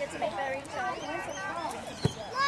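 Indistinct voices of several people talking at once outdoors, with no clear words.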